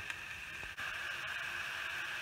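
Ground beef sizzling in a non-stick frying pan on a gas burner, a steady hiss. It drops out briefly and comes back a little louder just under a second in.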